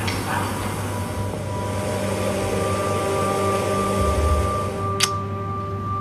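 Soft background music of slow, held tones over a low steady hum, with a single sharp click about five seconds in.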